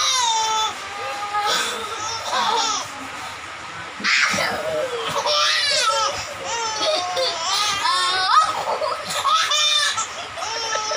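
A young boy and a baby laughing out loud in repeated bursts of belly laughs and giggles.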